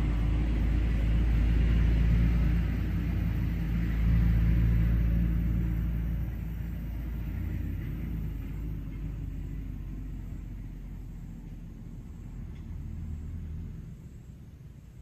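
Low engine rumble of a motor vehicle, strongest in the first few seconds and then slowly fading away.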